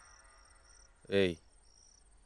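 Faint cricket chirping, a high trill in short pulses about twice a second, under a man's single loud call of "Hey" about a second in.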